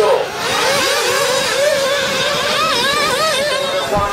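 Small two-stroke glow engines of nitro RC buggies screaming at high revs, their pitch rising and falling every fraction of a second as the cars are throttled on and off round the track.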